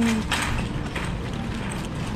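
Empty wire shopping cart rattling as it is pushed across a hard tiled floor, its metal basket and wheels clattering irregularly.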